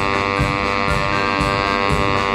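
Baritone saxophone holding one long, steady, reedy note over band accompaniment with a low rhythmic beat.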